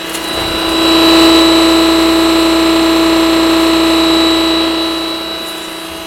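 Huter W105-GS electric pressure washer running: a steady, loud hum from its motor and pump, with a hiss over it, that grows louder about a second in and eases off slightly near the end. It is washing at good pressure.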